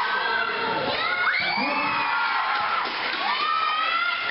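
Crowd of basketball spectators shouting and cheering, many voices overlapping, with long high yells that rise and fall.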